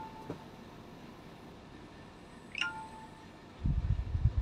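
A single short chime about two and a half seconds in, a quick falling note that settles briefly on a steady tone, over quiet room tone. Low thumps follow near the end.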